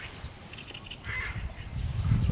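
A crow cawing: one short, harsh caw about a second in.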